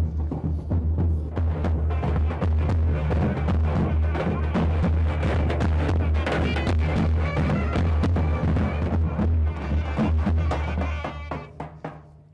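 Large double-headed drums (davul) beaten by hand in a wedding procession, a deep booming beat with many strokes, fading out near the end.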